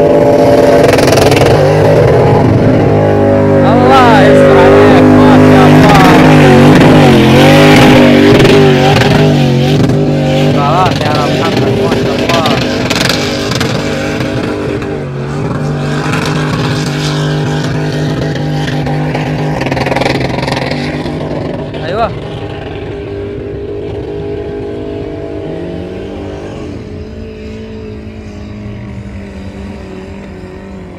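4x4 engine held at high revs as the vehicle climbs a sand slope, loudest over the first ten seconds and then fading gradually as it pulls away.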